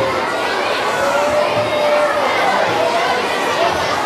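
A hall full of children chattering all at once: a steady hubbub of many overlapping voices with the echo of a large room.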